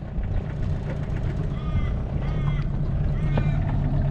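Small boat outboard motor running steadily at low trolling speed, with faint voices over it.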